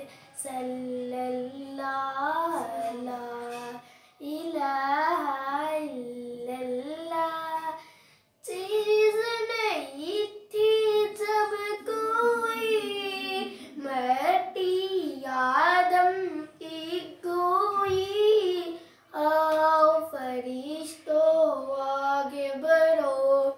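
A young girl singing a naat, an Islamic devotional poem, unaccompanied in a single voice. The melody comes in phrases separated by short pauses.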